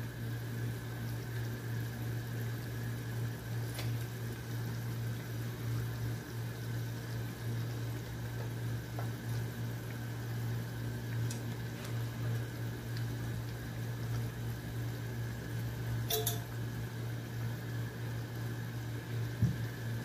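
Fish kuzhambu simmering in an aluminium pot on a gas stove, under a steady low hum. There are faint clicks about four seconds in and again about sixteen seconds in.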